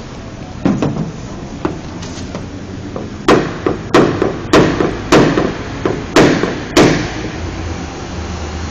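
Small hammer knocking on a car's sheet-metal roof panel over a support block held underneath, working a dent out. It starts with a few light taps, then about three seconds in comes a run of about eight sharper strikes, roughly two a second.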